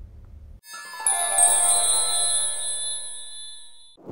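A bright, bell-like synthesized chime: one sustained note with many ringing overtones that comes in about half a second in, slowly fades, and cuts off abruptly at the end, as in an outro sting.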